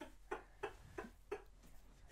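Soft, stifled laughter: about five short breathy pulses, roughly three a second, that die away after about a second and a half.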